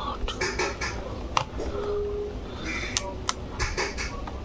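Plastic body-wash bottles being handled, knocking together in a few sharp clicks, over a low steady background hum.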